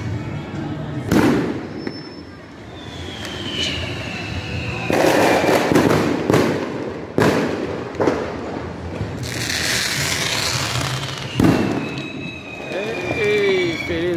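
New Year's fireworks going off around a neighbourhood: about half a dozen sharp bangs, with a burst of hiss midway. Twice a long thin whistle falls slowly in pitch.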